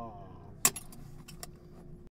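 A Foley hit effect for a slapstick blow: one sharp crack about two-thirds of a second in, followed by a few lighter clicks and rattles.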